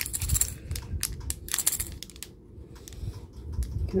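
Clear cellophane packaging crinkling and crackling in the hands, with a run of small clicks. It is loudest near the start and again around a second and a half in, and quieter just after the middle.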